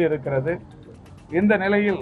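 A man speaking in two short phrases with a brief pause between them.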